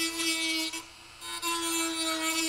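A Dremel rotary tool with a sanding drum runs with a steady high-pitched whine while it grinds into a plastic dash frame. The whine drops away for about half a second a little before the middle, then picks up again.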